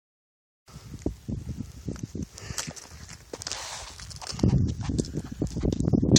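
Hiking boots shifting on loose granite rocks: irregular knocks and scrapes of stone. A low rumble on the microphone grows louder over the last second and a half.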